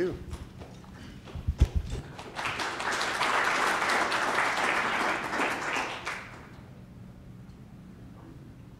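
A few low thumps, then an audience applauding for about four seconds, starting a little after two seconds in and dying away.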